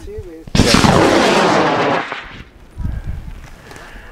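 Model rocket motor igniting at liftoff: a sudden loud rushing burn starts about half a second in, lasts about a second and a half, then cuts off.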